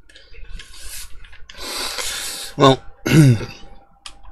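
A man's heavy breaths, two long exhales, followed by two short coughs near the end.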